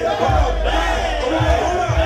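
Shouting voices over a loud hip-hop beat with heavy bass kicks, played through a club PA.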